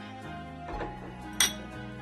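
Background instrumental music, with one sharp clink of a ceramic bowl set down on a hard surface about one and a half seconds in.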